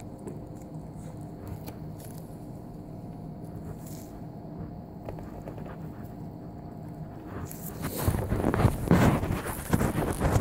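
Faint steady room hum with scattered small clicks and rubbing, then, about three-quarters of the way in, loud rustling and scraping as the phone is handled and moved against its microphone.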